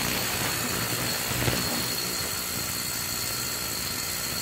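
Ultrasonic cleaner transducer buzzing steadily as it vibrates an aluminium plate, with a thin, steady high tone over the buzz.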